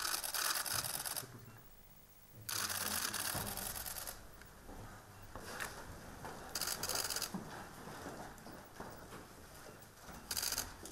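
Press cameras' shutters firing in rapid bursts, several runs of quick clicks each lasting about a second, with quieter room sound between them.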